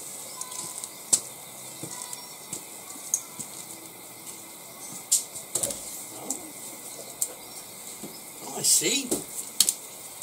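Scattered light clicks, with a short murmur of a person's voice near the end.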